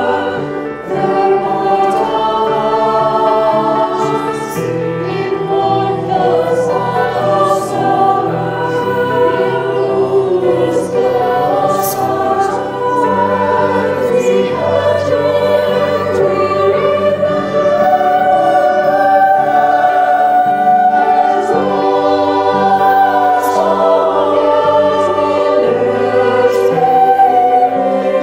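Voices singing a slow song in long, held notes over a low sustained accompaniment.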